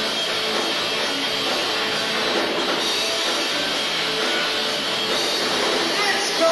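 Live rock band playing: two electric guitars, bass guitar and drum kit in a steady, loud instrumental passage with no singing.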